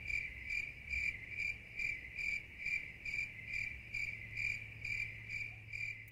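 Crickets chirping in an even rhythm of about two chirps a second: a 'crickets' sound effect standing for silence, meaning there is nothing to show.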